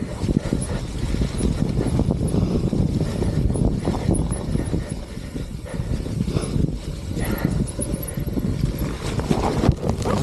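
Deviate Claymore mountain bike rattling down a rutted dirt trail: a continuous rumble and clatter of tyres, chain and frame over the bumpy ground, with heavy wind noise on the camera microphone. Near the end a sudden louder crash as the bike goes down into the bracken.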